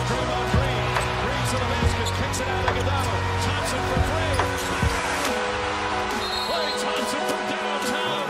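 Basketball game sound on a hardwood court: the ball bouncing in repeated sharp thuds, with short sneaker squeaks and the steady noise of an arena crowd. A low steady hum under it drops away about five seconds in.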